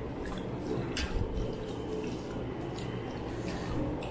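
Eating sounds: mouths chewing and fingers working food on steel plates, with a few small clicks of fingers against the metal over a steady low room hum.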